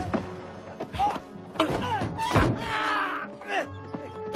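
Action-film fight sound effects: about half a dozen sharp punch and body-hit thuds in quick succession over a music score.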